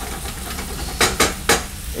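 Thistle mushrooms, ham and pepper sizzling in a stainless frying pan over a gas flame as they cook down in the water the mushrooms give off, stirred with a spatula. Three quick spatula knocks against the pan about a second in.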